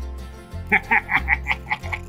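Laughter: a quick run of about seven short pulses in the second half, over a background music bed.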